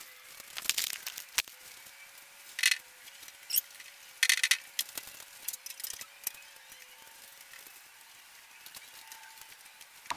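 Plastic squeegee spreading wet epoxy over a fiberglass-covered surface: a run of short, irregular high-pitched squeaks and swishes, one stroke after another, over a faint steady hum.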